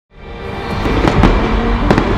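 Fireworks crackling with several sharp pops over loud music, fading in from silence at the start.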